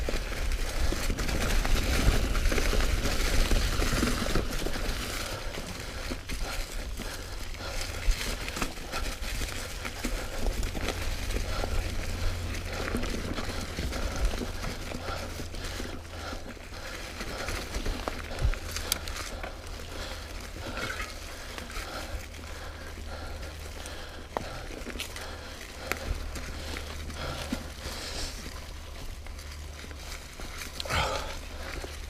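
Commencal Meta V4.2 mountain bike rolling over a trail carpeted with dry fallen leaves: a continuous crunching, crinkling rustle from the tyres with scattered knocks and rattles from the bike over bumps, over a low rumble. Loudest in the first few seconds, then a little softer.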